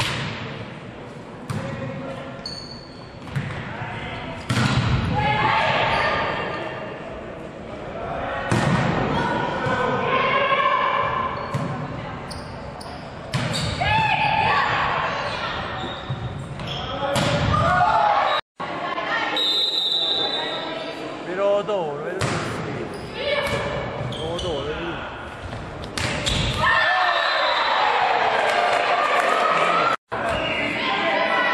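Volleyball game play in a reverberant sports hall: the ball is struck and bounces again and again while players' and spectators' voices shout and call out between the hits.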